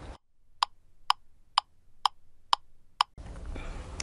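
Six evenly spaced, clock-like ticks, about two a second, over dead silence: a ticking sound effect laid in at an edit.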